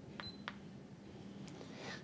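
Leica Disto X310 laser distance meter giving one short, high beep as its ON/DIST button is pressed.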